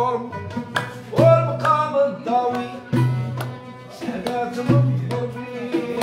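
Moroccan malhoun music: oud and bowed strings (rebab) playing a melody over a percussion rhythm, with a deep drum stroke recurring about every second and a half to two seconds and lighter sharp strokes between.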